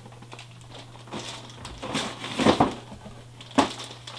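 Plastic blister packaging and a product box being handled: a few scattered clacks and crinkles, the loudest about two and a half seconds in and a sharp one near the end.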